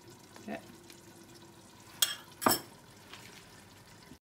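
Metal spoon scraping blended okra out of a bowl onto rice in a stainless steel pot, with two sharp clinks of the spoon about half a second apart near the middle.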